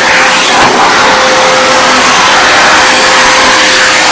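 Canister vacuum cleaner running loudly and steadily, a rushing whoosh with one steady tone through it, as its hose and floor wand are worked along the floor.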